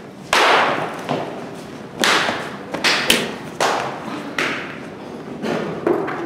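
A run of sudden thuds and hits, roughly one a second, each trailing off quickly: blows and falls in a staged scuffle.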